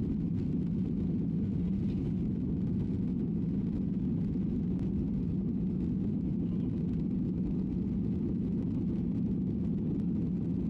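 Engines of a Ryanair Boeing 737 at takeoff thrust, heard from inside the cabin: a steady low roar through the end of the takeoff roll, lift-off and initial climb.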